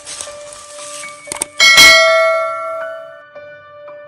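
A bell-chime sound effect: one loud ring struck about one and a half seconds in, fading out over the next second and a half, with a few light clicks before and after it.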